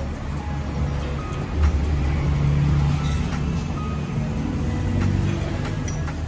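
A low, steady motor vehicle engine rumble, swelling a little about two seconds in, with music playing underneath.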